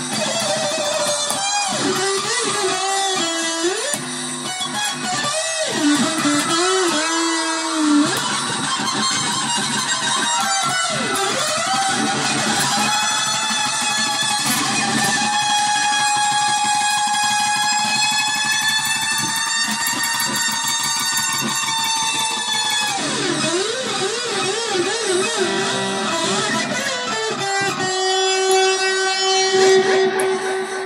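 Electric guitar with an offset body, played through an amplifier: picked notes and chords with the pitch wavering and dipping, and one long chord held ringing for about nine seconds from about 13 seconds in.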